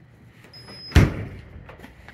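An old upright freezer's door being pushed shut, closing with a single solid thud about a second in.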